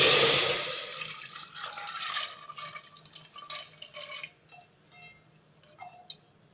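Water poured from a vessel into an aluminium pressure cooker holding dal: a loud gush at the start that dies away over about two seconds, then a few splashes and drips until about four seconds in.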